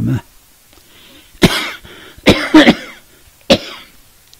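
An elderly man coughing into a close microphone: a short run of dry coughs about a second apart, the loudest in the middle.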